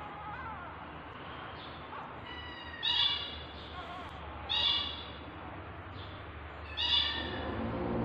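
Newborn kittens mewing in short high-pitched cries, three loud ones spaced about two seconds apart, with fainter mews between. Background music comes in near the end.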